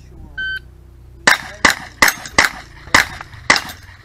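A shot timer's start beep, then six gunshots over about two and a quarter seconds, roughly half a second apart.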